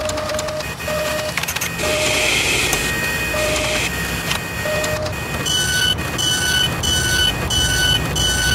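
Mechanical sound effects for an animated machine sequence: steady machine whirring with clicks and scattered short beeps. From about halfway, a two-note beep repeats about twice a second.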